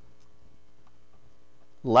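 Steady, faint electrical mains hum with low room tone; a man's voice starts near the end.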